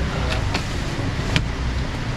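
Outdoor street-market background noise: a steady low rumble like a nearby engine or traffic, with a few short sharp clicks.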